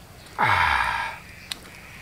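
A man's loud, breathy "aah" of relish after a mouthful of soup, falling in pitch and lasting under a second, followed by a short click.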